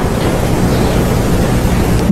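Steady, loud rushing noise with a strong low rumble and no distinct events.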